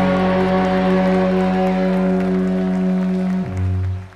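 A live rock band of guitars, bass, keys and drums holding the final chord of the song. The lowest note drops about an octave shortly before the end, and the chord then cuts off sharply.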